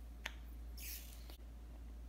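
Faint handling sounds as a clear plastic coin capsule is put back together with gloved hands: a small sharp click about a quarter second in, a short soft rustle about a second in, and a faint tick shortly after.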